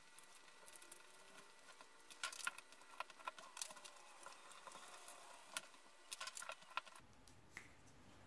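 Faint handling sounds of copy paper being rolled into a tube around a pen: soft rustles and scattered small clicks and taps, a little louder about two and a half seconds in.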